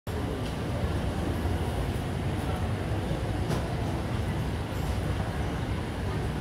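Steady outdoor background noise, mostly a low rumble, with faint voices of people nearby.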